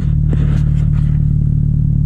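A car engine idling steadily, a low even hum, with a few light knocks about half a second in.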